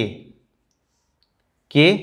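A man speaking Hindi trails off, then about a second and a half of dead silence, as if the track were gated, before his voice resumes near the end.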